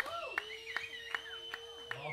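Slow, evenly spaced hand claps, about two a second, just after a live rock band's song has ended. Rising and falling whistle-like tones and a steady high held tone run under the claps.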